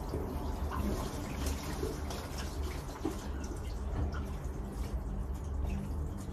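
Fingertips rubbing and patting sunscreen cream into facial skin, giving faint soft wet ticks at irregular moments over a steady low hum.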